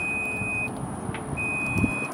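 Ford F-150 Lightning's power tailgate lowering with its warning beep: a steady high electronic beep repeating about every 1.4 s, twice here, each a bit under a second long.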